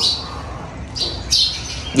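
A bird chirping: a few short high chirps, one at the start, one about a second in and another shortly after.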